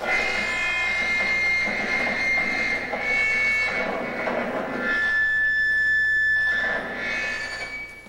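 High school concert band playing a short passage of held chords, starting together from quiet and stopping shortly before the end.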